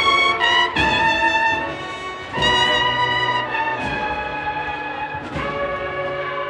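Banda de cornetas y tambores (cornet-and-drum band) playing a Holy Week processional march: held cornet chords punctuated by drum strokes about every second and a half, getting softer in the second half.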